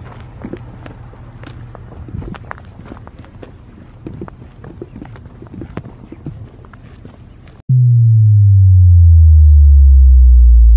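Footsteps on a dirt track with a low steady rumble. About three-quarters of the way through, a loud, deep electronic tone effect cuts in suddenly and glides downward in pitch.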